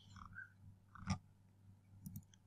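A quiet pause with faint breath and mouth noises and one short click about a second in.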